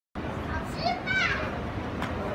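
Children's voices, with one child's high-pitched call that falls in pitch about a second in, over steady background noise.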